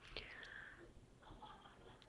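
Near silence: faint room noise with a soft breath early on.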